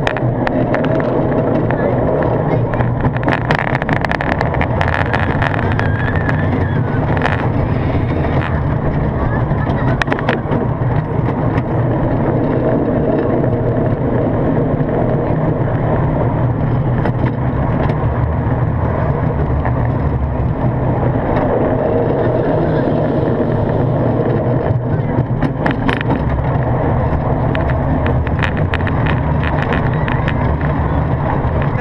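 Zierer Tivoli family coaster train running along its steel track: a steady rumble of wheels and rattling cars with scattered clicks and knocks, mixed with wind on the microphone.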